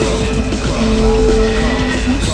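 Experimental electronic music: several held, droning tones, one low and one high, over a dense bed of noise.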